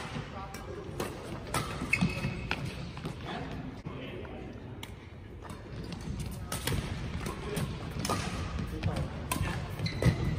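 Badminton doubles rally: rackets striking the shuttlecock in an irregular series of sharp cracks, with players' footsteps thudding and court shoes squeaking on the floor.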